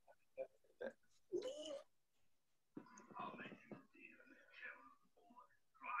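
Faint, muffled voices talking in the background, with a few soft clicks early on; otherwise close to silence.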